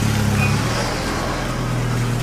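A vehicle engine idling steadily with a low hum, under general street noise.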